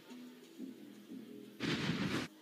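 TV sports broadcast's replay transition sound effect: a short, loud whoosh-and-hit stinger about one and a half seconds in, lasting under a second, over faint arena background.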